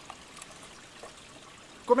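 Quiet, steady trickle of running water, a small stream, with a man's voice starting just before the end.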